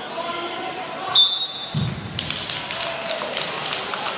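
A referee's whistle blows one short, high blast a little over a second in, followed by a thud, then a run of scattered hand claps.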